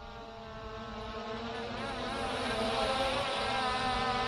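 Skydio 2 quadcopter drone's propellers buzzing at a steady pitch, growing steadily louder as the drone is brought down lower toward the listener.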